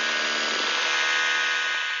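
Trailer sound-design effect: a steady, bright, ringing hiss with several held tones, sustained after a deep hit just before, beginning to fade near the end.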